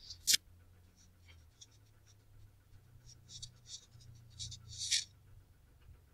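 Stylus writing on a touchscreen: a sharp tap about a third of a second in, then a run of faint, short scratching strokes as a word is handwritten.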